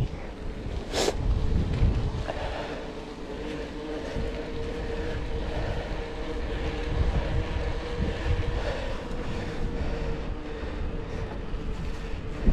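Mountain bike tyres rolling over brick paving and a cycle path: a steady rolling rumble with wind buffeting the chest-mounted camera's microphone. There is a sharp click about a second in, and a faint steady hum through the middle.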